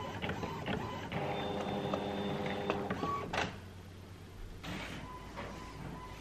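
Desktop printer running as it prints and feeds out a sheet of stickers: a steady mechanical whir from about a second in that stops at about three and a half seconds with a short knock.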